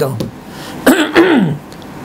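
A man clears his throat once, briefly, about a second in, between spoken phrases.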